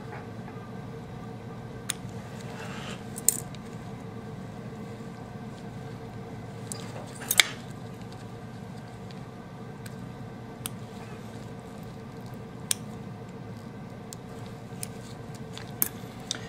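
Metal dissecting scissors snipping through a preserved rat's abdominal wall. About half a dozen sharp, scattered clicks of the blades and instruments are heard, the loudest about seven seconds in, over a steady low hum.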